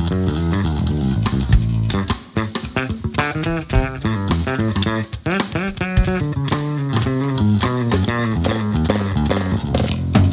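A live rock band playing an instrumental passage, with electric bass, electric guitar and a drum kit keeping a steady beat.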